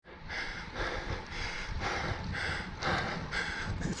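A cyclist's heavy, rhythmic breathing from exertion on a steep climb, about two breaths a second, over a low rumble of road and wind.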